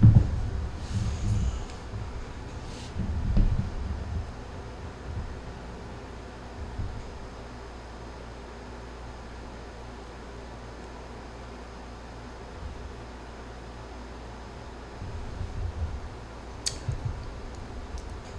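Quiet room with a steady low hum, broken by soft chewing and mouth sounds from a person eating a small hot pepper, a few in the first seconds and again near the end, with one short click.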